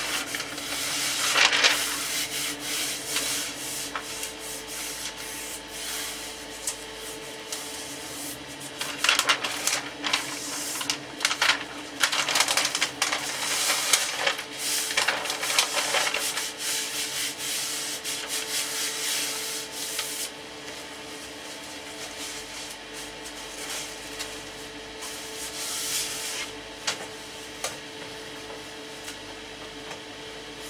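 Thin wood veneer sheet rustling and scraping as it is handled and rubbed down onto a speaker cabinet, in irregular bursts with crisp crackles.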